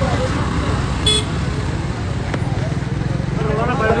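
Men's voices in a walking crowd beside road traffic, over a heavy, steady low rumble on the microphone. A short vehicle horn toot comes about a second in.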